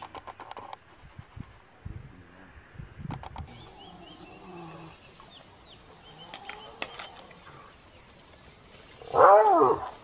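Wild animals calling at close quarters in a fight: faint high chirping calls through the middle, then one loud, wavering, pitched cry lasting under a second near the end.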